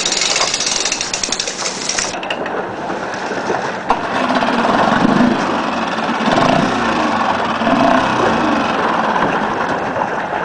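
Nissan Marine 3.5 hp four-stroke outboard running, the boat's small single motor chugging steadily; from about four seconds in its note wavers up and down.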